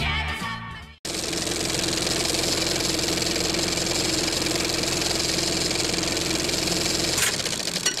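Music from a vinyl record fades out and stops about a second in. Then a steady mechanical whirr with a low hum and fine crackle starts abruptly, like an old film projector sound effect, and changes shortly before the end.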